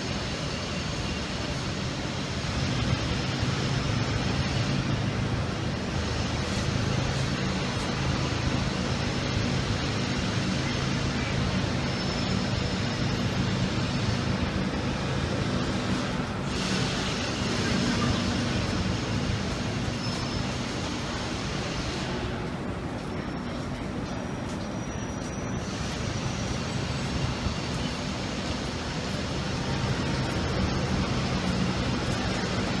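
Fire truck's diesel engine running steadily at close range: a constant low hum under an even rush of noise.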